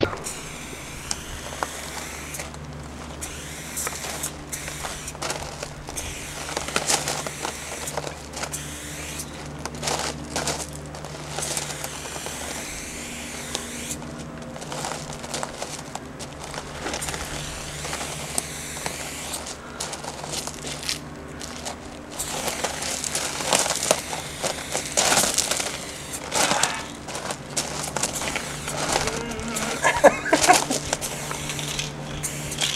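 Aerosol spray can with a fat cap hissing in repeated long and short bursts as a large tag is painted, the bursts louder in the second half. A steady low hum runs underneath.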